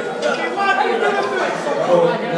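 Indistinct talk: several people's voices overlapping in chatter, none clearly made out.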